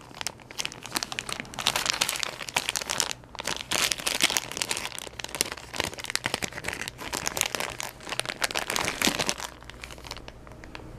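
Clear plastic bag of wax melts crinkling irregularly as it is handled and opened, dying away about half a second before the end.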